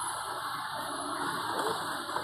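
Faint, indistinct voices and general ambient noise of a covered market hall.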